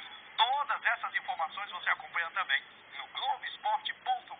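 A man speaking in Portuguese, talking continuously.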